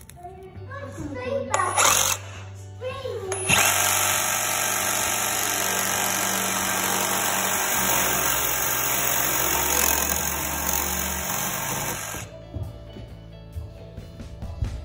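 A reciprocating saw cutting through an iron baluster: a loud, steady metal-cutting buzz. It starts about three and a half seconds in and runs for about eight seconds, then stops near the end.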